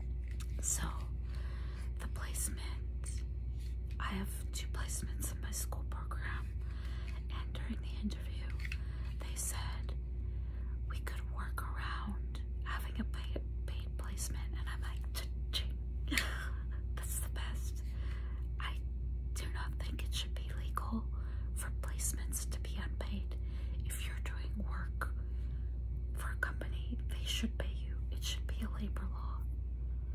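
A woman whispering, talking on in a breathy, unvoiced hush, over a steady low hum.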